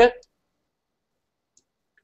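A single faint computer mouse click about one and a half seconds in, otherwise near silence.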